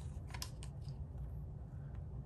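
Small plastic clicks and taps as a hard plastic chassis brace is handled and set against the chassis of a 1/16-scale RC truck: a handful in the first second, then only a low steady hum.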